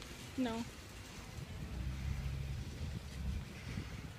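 Wind rumbling on the microphone, with a low rumble that swells for about a second and a half in the middle.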